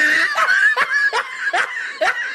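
A person laughing in a quick run of short bursts, several a second.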